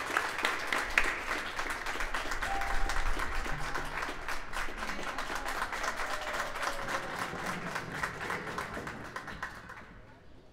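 Audience applauding with many hands clapping; the applause thins and fades out near the end.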